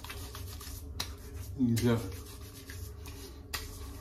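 Wet hands rubbing over a bearded face, a soft steady rubbing hiss, as the face is wetted with the soap's soaking water before lathering. A brief voiced grunt sounds near the middle.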